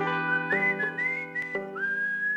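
A person whistling a melody whose notes slide up and down, over ringing guitar chords.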